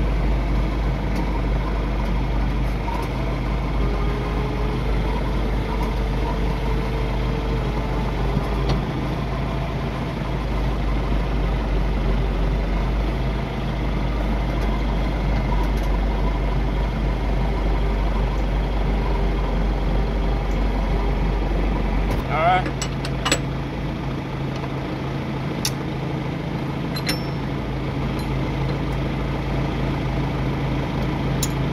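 Tractor engine idling steadily, its hum stepping up in pitch about 22 seconds in. A few sharp metal clanks come near that change and later on.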